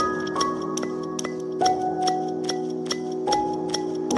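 Background music: held, bell-like notes that change every second or so over a steady ticking beat.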